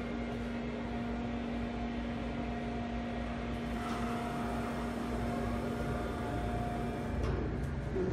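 Steady hum of a Kone elevator car's cab ventilation fan, heard through the open car doors; it drops away about seven seconds in as the doors slide shut.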